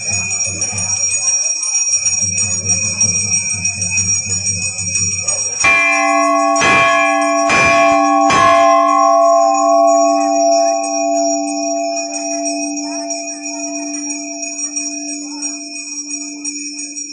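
Large metal temple bell struck by hand four times, about a second apart, starting about six seconds in. After the strikes it keeps ringing with a steady tone that slowly dies away.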